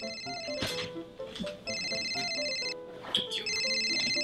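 Smartphone ringing with an incoming video call: high, steady ring tones in bursts about a second long, repeating about every two seconds, over background music.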